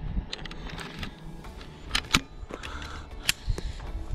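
Firearms being handled close to the microphone: a scattered series of sharp clicks and knocks, the loudest about two seconds in and again about three seconds in. No shot is fired.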